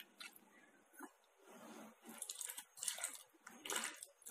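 A hand mixing thick gram-flour batter with chopped cauliflower and potato in a plastic bowl: faint, irregular wet sounds, a little louder in the second half.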